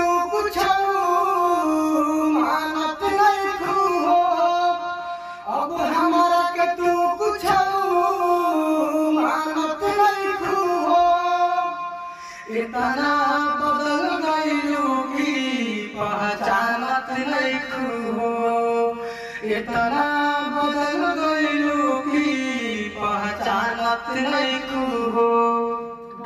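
A man's voice singing a slow Bhojpuri sad song without accompaniment, in long held phrases with bending, ornamented notes and short breaths between them. The later phrases sit lower in pitch.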